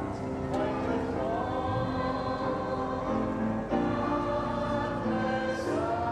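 Choral music: a choir singing slow, held chords that change every second or two.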